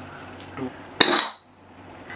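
One sharp metallic clink of chrome-plated steel weight plates striking each other about a second in, ringing with a bright high tone that stops abruptly.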